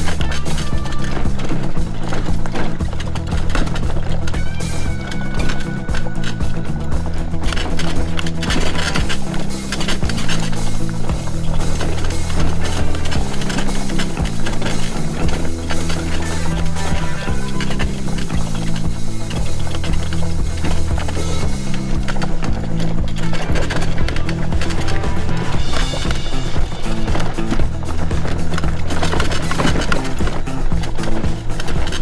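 Background music with a bass line of low held notes that change pitch every second or two.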